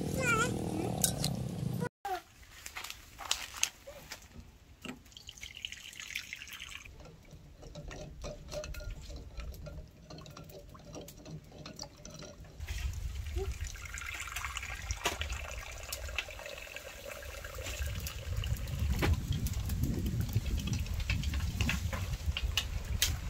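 Water running in short spells, with small clicks and knocks as boiled duck eggs are handled in a ceramic bowl.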